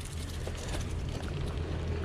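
Low, steady wind noise on the microphone of a camera mounted on a bicycle that is rolling off across asphalt, with light tyre noise underneath.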